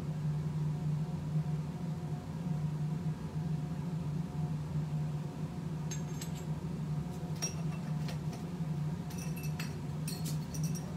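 Glass laboratory glassware clinking as a glass acid bottle and beakers are handled: a clink about six seconds in, another a second and a half later, and a few quick ones near the end, each with a short ring. A steady low hum runs underneath.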